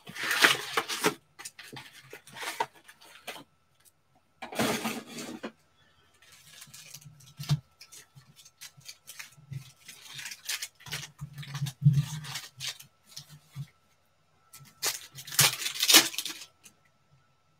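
Hands opening a cardboard trading-card box and handling a stack of foil-wrapped card packs: irregular crinkling and rustling with small taps. The loudest rustle comes about five seconds in.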